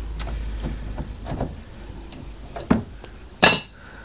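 Steel spanner knocking and clinking against the car's steering joints: a few light knocks, then one louder, ringing metallic clink about three and a half seconds in.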